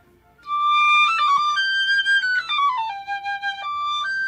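Piccolo playing a short, slow phrase in its middle register, starting about half a second in: a held note, a step up to a longer note, then a descending run of notes settling on a lower held note, with a new note beginning near the end. It demonstrates the sweet tone of the piccolo's middle register, the part of its range it shares with the flute.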